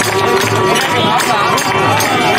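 Protest song sung by several voices, accompanied by a dholak drum, a jingling tambourine and hand clapping.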